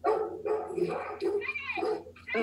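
A shelter dog barking steadily while it tries to get through a guillotine door to reach a person, played back from a video on computer speakers.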